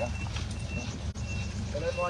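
A concrete mixer truck running at a pour, with a steady low engine rumble. Its reversing alarm beeps a short high tone about every half second.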